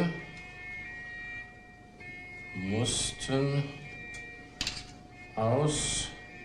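A man's voice dictating a message slowly, a word or two at a time with long pauses, over a steady faint high tone.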